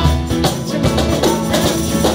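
Acoustic guitar strummed in a steady rhythm, with a man singing over it.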